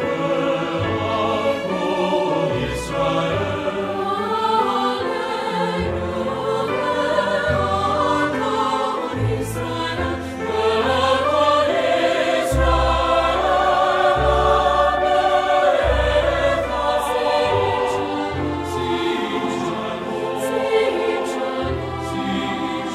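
Mixed four-part SATB choir singing a Hebrew prayer text over instrumental accompaniment, with held low bass notes beneath the voices.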